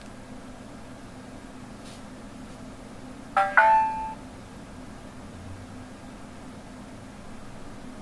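Palm Pre smartphone's speaker giving a short two-note chime about three and a half seconds in, over a steady low hum.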